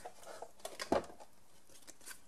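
Faint handling noise at a die-cutting machine: a few soft clicks and taps as hands move over the machine and set out cardstock and a die, the sharpest click about a second in.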